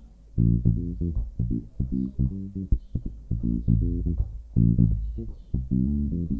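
Electric bass guitar on old, worn strings playing a reggae bassline: a run of short, separately plucked notes that starts about half a second in.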